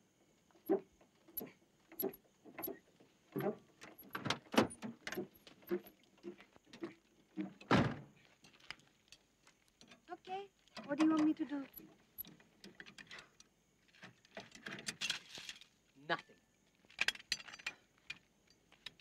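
Metal clinks and knocks of a car jack and wheel brace being worked by hand during a roadside tyre change: short, irregular strikes of steel on steel, one sharper knock about eight seconds in.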